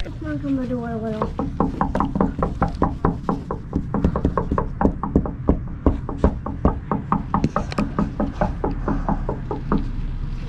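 Brisk footsteps on hard pavement, an even patter of about four steps a second, over a low rumble of movement. In the first second a voice slides down in pitch.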